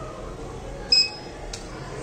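A single short, high electronic beep from the smart-bike prototype board's piezo buzzer about a second in, followed by a faint click, over a steady low hum.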